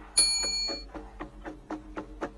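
Cartoon background music: a bright chime rings out just after the start and fades within about a second, then light ticking percussion about five beats a second over soft held notes.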